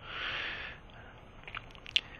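A soft breath drawn between phrases of narration, then a few faint clicks near the end.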